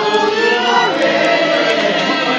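Accordion and violin playing a tune live, with sustained chords under a melody that slides in pitch.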